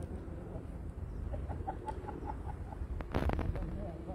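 A bird calling in the background: a quick run of short, evenly spaced clucking calls, about five a second, over steady outdoor rumble. A brief rush of noise comes about three seconds in.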